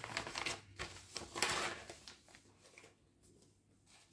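Plastic packaging of a cross-stitch kit rustling and crinkling as it is opened, in short bursts that die away about two seconds in.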